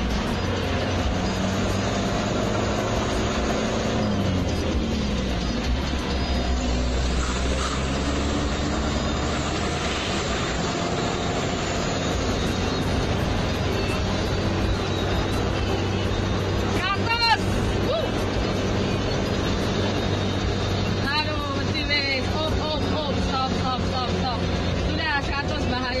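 Vehicle engine and road noise running steadily inside the cab while driving; the engine's pitch drops once about four seconds in. Music plays over it, and voices come in now and then in the second half.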